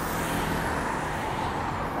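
Steady low rumble of road traffic and vehicle engines, even and without distinct events.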